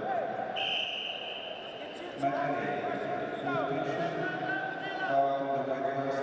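Referee's whistle, one steady high blast lasting about a second and a half, restarting the wrestling bout. It is followed by a thump a little over two seconds in and by shouting voices.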